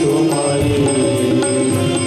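Hindu devotional aarti hymn: singing with instrumental accompaniment over a steady beat of about two strokes a second.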